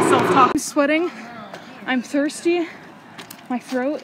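A woman's voice talking in short phrases close to the microphone, after a loud din cuts off abruptly about half a second in.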